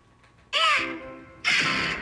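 A cartoon soundtrack: a short, high call with a swooping pitch about half a second in, then a loud hissing burst about a second later that fades away.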